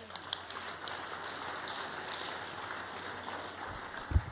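Audience applauding: a steady patter of many hands clapping that thins slightly near the end.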